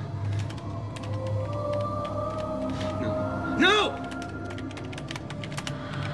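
Computer keyboard being typed on, a run of irregular clicks, over a sustained low film-score drone. A short voice sound cuts in a little past halfway.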